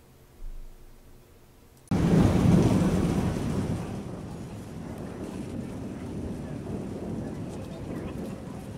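After about two seconds of near silence, thunder rolling over falling rain comes in suddenly, loudest at first with a deep rumble, then easing into a steady rain hiss.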